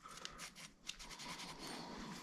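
Faint rubbing and scraping of a metal hinge rod being pushed through a saxophone key's hinge tube to drive out a pipe cleaner, with a couple of light clicks.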